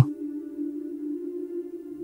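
Soft background music: a steady, held low chord with no beat or melody.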